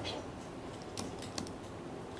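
Quiet room tone with three faint, short clicks about a second in, two of them close together.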